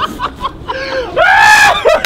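Young people laughing, then a loud high-pitched scream a little over a second in, lasting about half a second.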